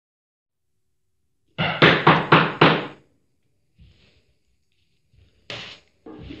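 Loud knocking on a door: five knocks in quick succession, about four a second, followed by a short fainter sound near the end.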